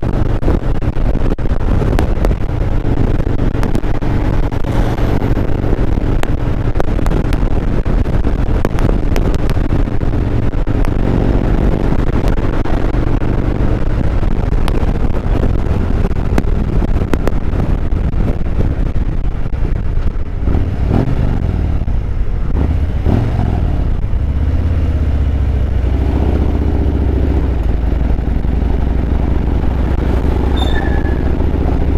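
2017 Harley-Davidson Road Glide Special's Milwaukee-Eight 107 V-twin engine running on the move, with wind and road noise. About two-thirds of the way in the engine note rises and falls, then settles into a lower, steadier note near the end.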